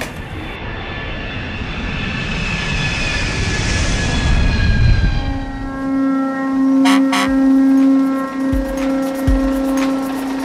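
Train sound effect: a rumbling rush that swells for about five seconds, then gives way to a steady humming tone. A couple of quick clicks and low thumps sound over the hum.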